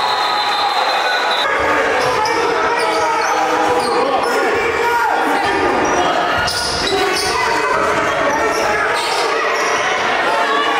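A basketball dribbled on a hardwood gym floor, with the chatter and calls of players and spectators around it.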